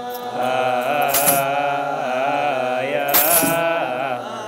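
Ethiopian Orthodox clergy chanting together in a long, wavering, melismatic liturgical chant. Two bright jingling accents come about two seconds apart, a little over a second in and again near the end.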